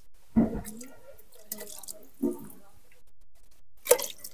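Liquid splashing and dripping in a pressure cooker as ground spices are mixed into lentils and water, in a few separate splashes.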